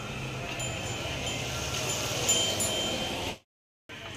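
Chime-like ringing tones, several high notes held over a background hiss, cut off suddenly a little over three seconds in.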